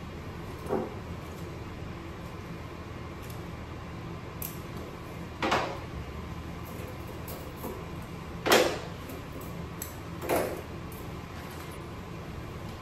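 Metal surgical instruments clicking and clinking as needle drivers are handled and loaded with suture on the back table: a few short sharp clicks, the loudest a little past the middle, over a steady low room hum.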